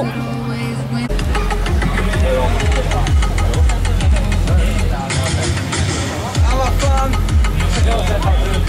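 Bass-heavy electronic music played loud through a car audio system's subwoofers, with pounding, evenly pulsing bass. It starts about a second in after a steady low hum, and the bass drops out briefly past the middle before coming back.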